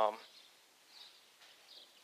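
The end of a man's drawn-out 'um' in the first moment, then quiet room tone with two faint, short high chirps about a second in and near the end.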